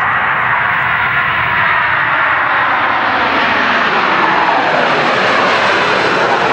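Jet airliner's engines at takeoff thrust as it lifts off and climbs away: a steady, loud rushing noise with a faint whine that slowly falls in pitch.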